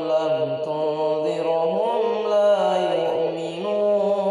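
A man reciting the Quran in melodic tajweed style, holding long drawn-out notes that slide down and then back up in pitch without a break.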